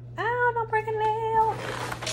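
A drawn-out, high-pitched vocal call that rises quickly and then holds on one pitch for over a second, followed near the end by a short cardboard rustle as a shoebox is lifted out of a shipping box.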